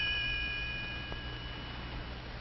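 A bright, bell-like magic-wand chime that marks a spell taking effect, ringing on and slowly fading away over about two seconds. A low steady hum runs underneath.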